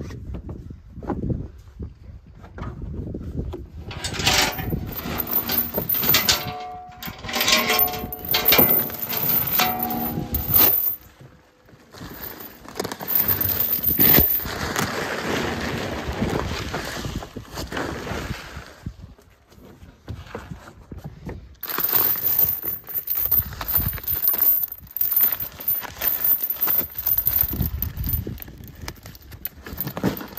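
Steel chain links clinking and jangling against each other, mixed with the rustle and scrape of a woven bulk feed sack, as the chain is wrapped and cinched around the sack's gathered top. The handling comes in irregular bursts with short pauses.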